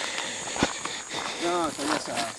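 Footsteps and rustling on dry, stony ground and brittle grass, with one sharp knock about a third of the way in. A brief, quiet voice near the end.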